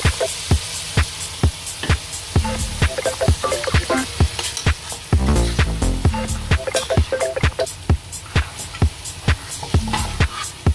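Chicken curry sizzling in oil in a wok while a steel ladle stirs it, under background music with a steady beat of about two a second.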